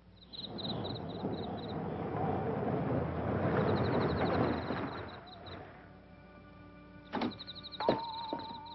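A car driving past, its engine and tyre noise swelling and then fading over about five seconds. Film score music with held notes follows, with a single thump about seven seconds in.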